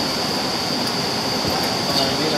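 Steady jet engine noise: a constant rumble under a continuous high-pitched whine.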